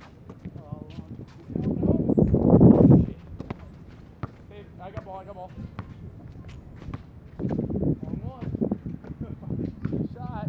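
Basketball bouncing on an outdoor asphalt court, with sharp knocks scattered through and players' voices in the background. The loudest thing is a low noise that lasts about a second and a half, starting near the beginning, with a shorter, weaker one later.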